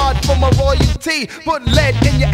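Hip hop music playing loudly: a rapped vocal over a deep bass line, with a short break in the sound about a second in.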